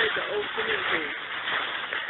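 Dry leaves rustling and crackling as a puppy tugs on a rope toy and scrambles in a leaf pile, a steady noisy rustle throughout. A faint voice talks underneath.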